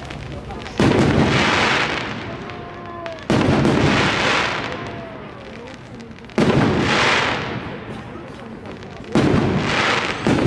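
Fireworks shells bursting overhead: four loud bangs about three seconds apart, each followed by a crackle that fades over a second or two.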